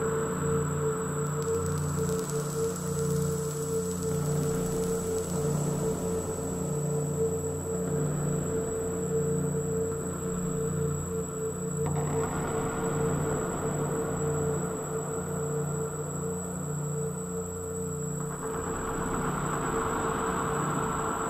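Ambient electronic drone improvisation: a steady mid-pitched tone held over a low, gently pulsing drone, with layers of hiss that swell about twelve seconds in and again near the end.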